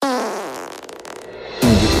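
A drawn-out fart, falling in pitch and growing rough and sputtery as it fades. Loud music with a steady beat cuts in about one and a half seconds in.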